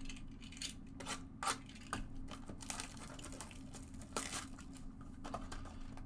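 Foil wrapper of a trading-card pack crinkling and tearing as it is handled and opened by hand, in a quick, irregular run of crackles.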